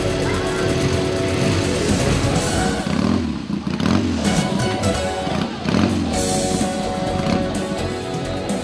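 Background music with a motorcycle engine running and revving under it, the engine most prominent in the middle few seconds as the music thins out.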